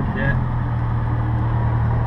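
Nissan 350Z's 3.5-litre V6 engine running steadily, heard inside the cabin.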